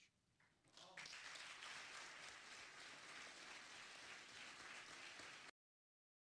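Audience applause from a seated crowd in a hall, starting about a second in and cut off abruptly about five and a half seconds in.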